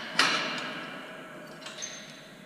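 Wire-mesh metal cage gate being handled: a sharp metallic clank about a quarter second in that rings away over about a second, then a small metallic click near the end as the padlock on the gate is worked.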